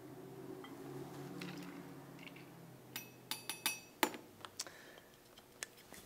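Triple sec poured faintly into a copper jigger, then a quick run of sharp, ringing metal and glass clinks, about half a dozen in under two seconds, as the jigger and liqueur bottle are handled over the copper shaker.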